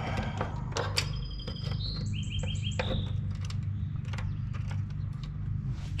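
A songbird whistling and then giving a quick run of about five chirps, about two seconds in, over a steady low hum and scattered light clicks.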